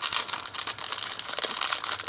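A small, thin, clear plastic bead packet crinkling and crackling as fingers work it open and dig inside for a bead: a dense, unbroken run of small crackles.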